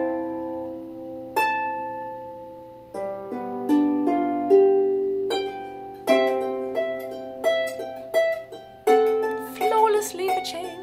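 Harpsicle lever harp played with plucked notes and chords in a passage of overlapping brackets. Each note sounds and then fades or is cut off. The fingers are placed early on the strings, which gives the stopping sound typical of a harpist still new to overlapping brackets, rather than a smooth ringing.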